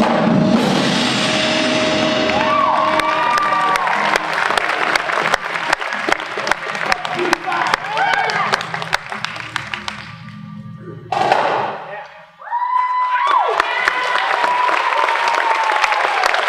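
A high school percussion ensemble of marching drums, mallet keyboards and synth sounds its closing notes with a held tone for the first few seconds. It gives way to audience applause and cheering with whoops, which breaks off briefly about eleven seconds in and then resumes.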